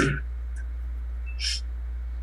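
A steady low hum fills a pause in speech, with the end of a spoken word at the start and a brief hiss, like a breath, about one and a half seconds in.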